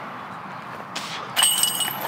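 Disc golf putt striking the chains of a metal basket: a sudden metallic jangle with a ringing tone about a second and a half in, on a made putt.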